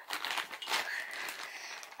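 A clear plastic zip-top bag crinkling and rustling irregularly as it is handled and opened.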